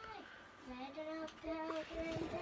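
A child singing faintly in the background, a few held notes that step between pitches.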